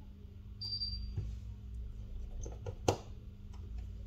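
Small metallic clicks and taps of a precision screwdriver on the screws and frame of an opened iPhone, with one sharper click just before three seconds. There is a brief high chirp about half a second in, over a steady low hum.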